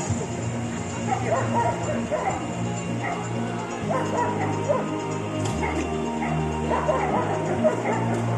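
Dogs barking and yelping repeatedly over music with held bass notes.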